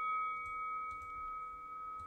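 A single bell-like chime ringing out and slowly fading: one clear high tone with a few fainter overtones, dying away.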